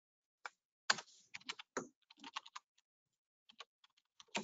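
Typing on a computer keyboard: a quick, irregular run of keystrokes for about two seconds, then a few more strokes near the end.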